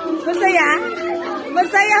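Several people's voices talking and exclaiming over one another, with a sharp rising-and-falling exclamation about half a second in.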